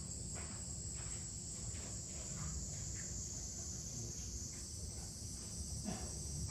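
A steady, high-pitched midsummer insect chorus, with a constant low rumble underneath.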